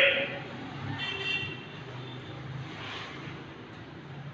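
The echoing tail of a loud shout in a bare room, dying away just after the start, then a steady background of distant road traffic with a faint pitched sound about a second in.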